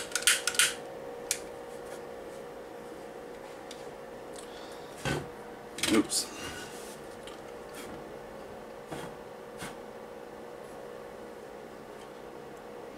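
A small 12-volt extractor fan hums steadily while tissue paper is handled with light clicks and rustles. About five and six seconds in come two sharper clicks as a long-reach lighter is struck and the tissue catches fire.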